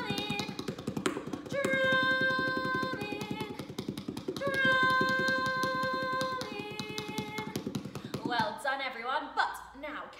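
Rapid drumming of palms on a hard plastic frisbee lying on the floor, a fast run of light taps. A voice holds several long steady notes over the tapping. The tapping stops about eight seconds in.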